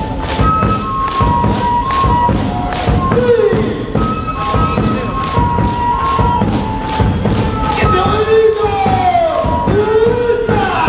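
Andean folk dance music: a high, flute-like melody of held notes over a steady drum beat of about two to three beats a second, with falling shouts breaking in a few times.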